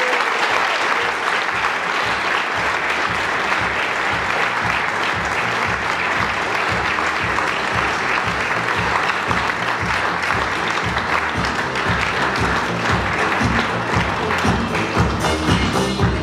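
Audience applauding continuously over music with a steady, pulsing bass beat.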